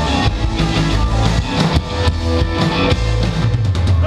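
Live surf rock instrumental played by a band on electric guitars, bass guitar and drum kit, with the drums prominent. A quick run of drum strokes comes near the end.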